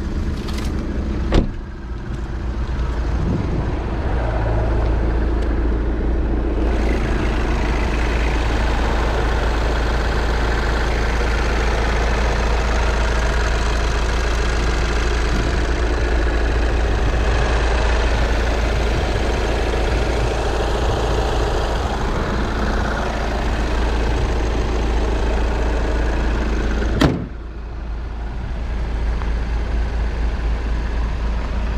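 Volkswagen CC's engine idling steadily, heard loudly while the hood is up, with a car door shut about a second and a half in and the hood slammed shut near the end, after which the engine sounds quieter.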